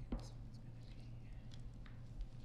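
Quiet room tone with a steady low hum, a single knock just after the start, and faint clicks and rustles of paper and a pen being handled at a table microphone.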